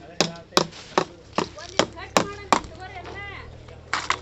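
A long rod jabbed down hard again and again at the ground by a pipe, making sharp knocks about two and a half a second. They stop about two and a half seconds in, and one more knock comes near the end.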